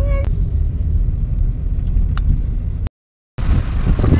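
A steady low rumble with a brief rising call at the start cuts off abruptly about three seconds in. After a short silence, a louder rushing noise of wind on the microphone and surf begins near the end.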